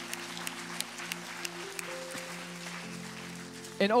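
Soft worship-band keyboard pad holding sustained chords that change twice, with scattered claps from the congregation; a man's voice comes back in at the very end.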